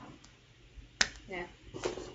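A single sharp click about a second in, followed by a short spoken "yeah".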